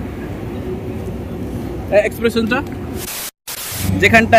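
Steady low outdoor background rumble with a few spoken words about two seconds in, then a short burst of hiss broken by a brief dropout at an edit cut.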